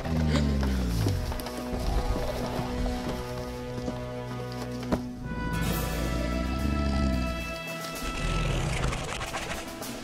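Background music score with low, deep dinosaur growl sound effects: one falling away in pitch over the first second or so, another rising and falling about six and a half seconds in.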